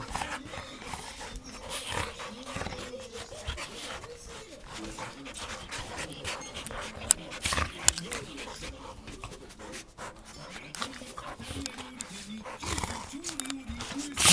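Golden retrievers play-wrestling at close range: panting, with the rustle and scuffle of fur and bedding. Two sharp knocks come about seven and eight seconds in.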